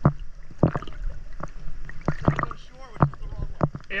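Small waves slapping and sloshing against an action camera held at the water surface while swimming: about a dozen sharp, irregular water splashes.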